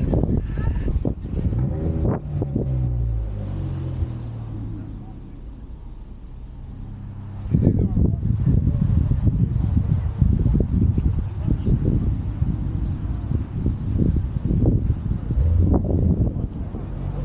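Car engine revving, the pitch falling back to a steady idle, then picking up again into a loud, rough low rumble about halfway through.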